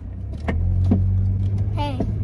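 Low, steady rumble of a car engine heard from inside the cabin, growing louder about half a second in, with a brief voice near the end.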